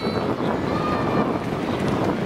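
Wind buffeting the microphone outdoors: a steady rumbling haze, with faint distant voices in the background.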